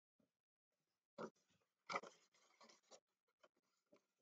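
Faint scratching of a coloured pencil on paper: a few short, irregular strokes, the two loudest about one and two seconds in.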